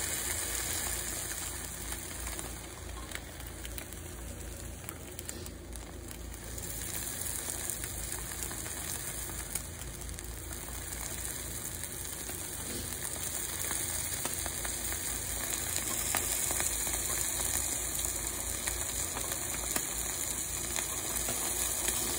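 Eggs and cheddar sizzling steadily between the hot plates of a closed Cuisinart Griddler contact grill. The sizzle eases off briefly about four seconds in and grows louder again in the second half.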